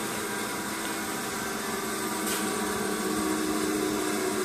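Urschel Comitrol 2100 processor running: its electric motors, including the 40 hp impeller drive, give a steady hum and whir with a few steady tones. It grows slightly louder about halfway through.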